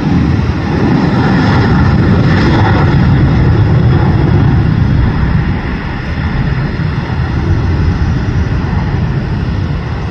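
Jet engines of a Southwest Boeing 737 at takeoff thrust: a loud, steady jet roar heaviest in the low end, as the airliner rolls, lifts off and climbs. The roar eases slightly a little after halfway through.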